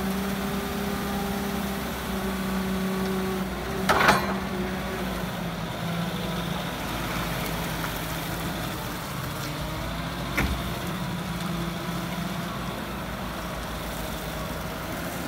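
Diesel engine of a JCB Teletruk TLT35D 4x4 telescopic forklift running as the machine drives around, with a steady hum whose note dips slightly about five seconds in. A short, loud, sharp noise sounds about four seconds in and a smaller one about ten seconds in.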